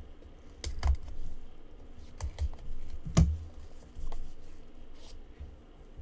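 Gloved hands handling and opening small trading-card boxes: scattered sharp clicks and taps, the loudest about three seconds in.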